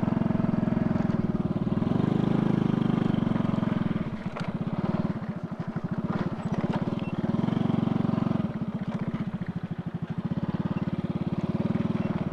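Motorcycle engine running at low speed while riding slowly over rough, rutted dirt, the throttle opened and eased off in turns: it swells about two seconds in and again around eight seconds, dropping back between.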